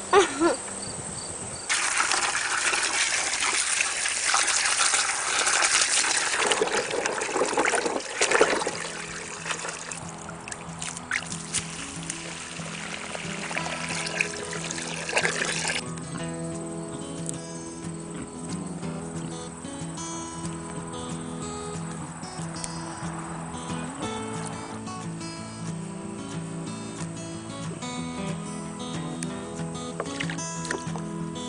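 Water pouring and splashing for about six seconds, then instrumental background music that runs on steadily.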